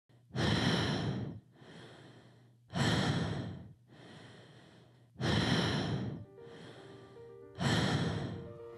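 A person breathing hard from the effort of an uphill bicycle climb: four heavy breaths about two and a half seconds apart, each loud breath followed by a softer one. Soft held music notes come in after about six seconds.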